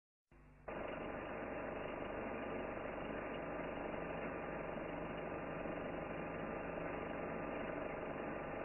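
A steady, muffled mechanical whirr of a running film projector motor, with a faint low hum, starting just under a second in.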